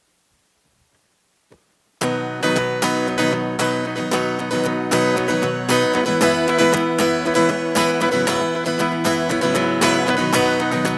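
Near silence for about two seconds, then a guitar suddenly starts strumming chords in a steady rhythm, the opening of a worship song. The guitar is a clean-toned, Les Paul-style electric with a capo.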